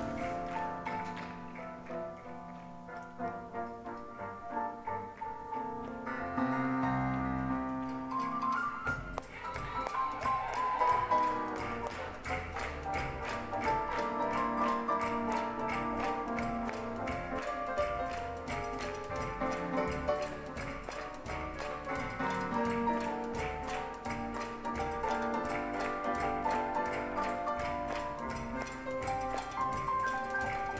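Live jazz band of piano, double bass and drums playing up-tempo swing. The piano is in front at first, and about nine seconds in a steady, crisp drum beat sets in under it.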